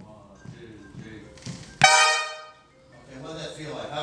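A trumpet section playing a big-band passage together, ending about halfway through on a sudden, loud, short accented note that rings out briefly. Voices follow near the end.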